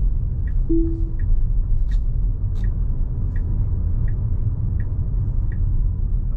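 Road and tyre rumble inside the cabin of a Tesla Model Y driving slowly on city streets. The turn signal ticks steadily about every 0.7 seconds as the self-driving car sets up a lane change. A short single tone sounds about a second in.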